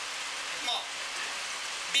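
A steady, even hiss, with one short spoken word a little under a second in.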